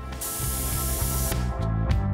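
A Harder & Steenbeck Infinity airbrush spraying in one hissing burst of about a second, over background music that starts about half a second in.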